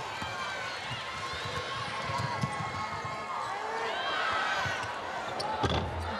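A basketball dribbled on a hardwood court, with repeated thuds and sneakers squeaking, over a steady arena crowd murmur.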